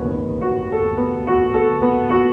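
Piano music, with notes and chords struck a few times a second and left ringing.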